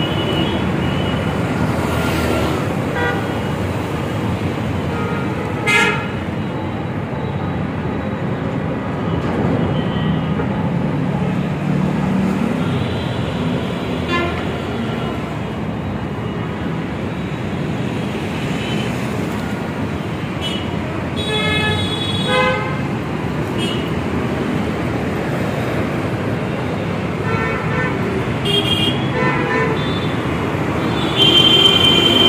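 Steady city road traffic with vehicle horns honking several times: a short honk about six seconds in, and longer bursts of honking about two-thirds of the way through and again near the end.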